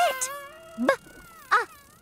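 A cartoon character's voice sounding out letter sounds one at a time ("B... a..."), short drawn-out calls about a second apart. A held background music note runs under the first part and stops just before the second call.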